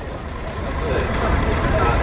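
Low rumble of street traffic, a vehicle passing, growing louder over a couple of seconds.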